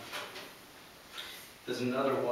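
An indistinct person's voice, fading out at the start and coming back near the end, with a few faint short knocks in the quieter middle.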